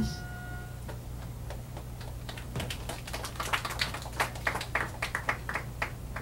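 Steady low electrical hum from the band's amplified stage gear between songs, with a run of light, sharp clicks or taps, a few a second, starting about halfway through.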